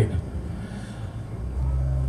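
Low rumble of a handheld stage microphone being handled, louder and steadier about one and a half seconds in.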